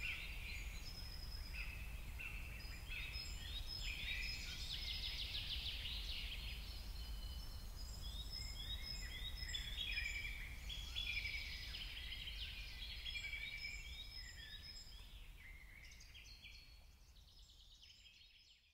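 Birdsong: several small birds chirping and trilling in quick repeated phrases over a steady low background rumble, fading out over the last few seconds.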